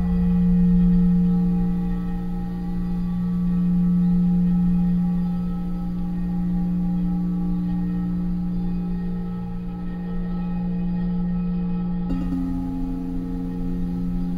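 Metal singing bowls ringing with a deep sustained tone and a stack of higher overtones, the sound slowly swelling and fading. About twelve seconds in, a second, somewhat higher bowl starts sounding under it.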